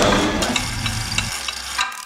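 Exhibit clock mechanism running: a hissing whir with light, rapid clicks about five a second, fading and cutting off just before the end.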